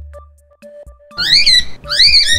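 Hamster squeaks: two runs of high-pitched squeaks that sweep up and down quickly, the first a little past halfway and the second near the end, over light background music.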